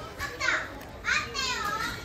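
A young child's high-pitched voice calling out twice: a short cry about half a second in, then a longer, wavering one from about a second in.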